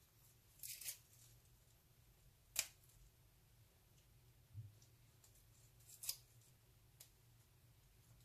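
Faint, crisp snaps and rustles of fresh mint leaves being pinched off their stems by hand, five or six separate short sounds a second or so apart.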